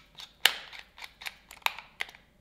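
Small plastic clicks and taps of an iPhone being pressed and worked into a Rode smartphone holder clamp: a scatter of light clicks, with two sharper ones about half a second in and near the end.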